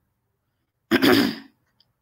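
A woman clearing her throat once, a short rough burst about a second in.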